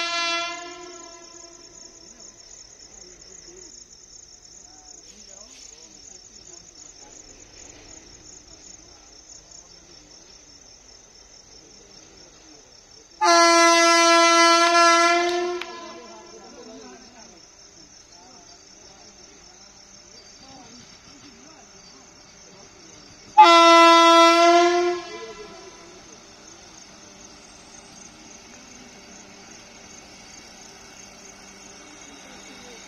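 Vande Bharat Express train horn sounding three single-pitched blasts: a brief one right at the start, then two longer blasts of about two seconds each, about 13 and 23 seconds in, as the train approaches. A steady high-pitched chirring of insects runs underneath throughout.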